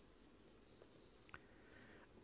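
Near silence: faint room tone in a pause between spoken sentences, with one faint click near the end.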